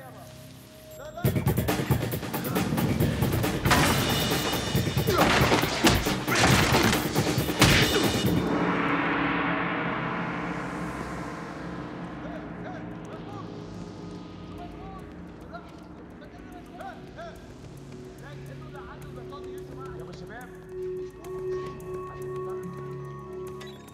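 A sudden loud, dense clattering burst about a second in that lasts some seven seconds, then dies away into film score with rising and falling swells and low pulsing notes.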